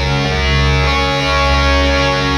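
Black metal track playing: distorted electric guitars over dense drumming and cymbals.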